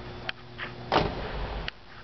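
Rear passenger door of a Saturn Vue SUV being shut: a sudden thump about a second in with a short rattle, ending in a sharp latch click.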